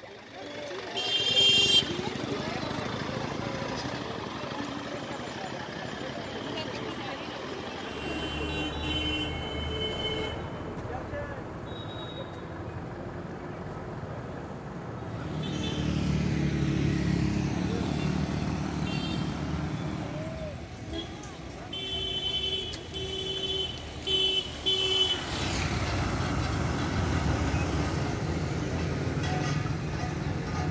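Street noise with motor vehicles passing and horns sounding: a loud horn blast about a second in, and a run of short horn toots later on.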